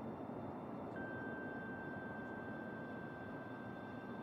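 Faint ambient opening music: a steady low wash with a single high note that comes in about a second in and holds.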